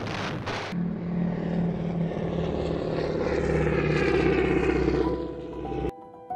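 Propeller aircraft engines droning, growing louder over several seconds and cutting off suddenly just before the end, after a couple of explosion-like noise bursts in the first second.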